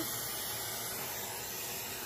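Steady hiss of a dental high-volume evacuator (HVE) suction drawing air and fluid from the patient's mouth.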